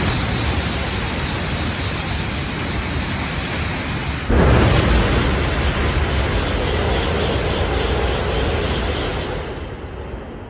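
Shinkansen bullet trains passing through a station at high speed, a steady rush of air and wheel noise with a low rumble. First comes an E5-series train. Then, with an abrupt jump about four seconds in, a louder rush as an E6-series train goes by, easing off near the end.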